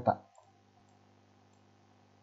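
The end of a spoken word, then a single faint click about half a second in, followed by near silence.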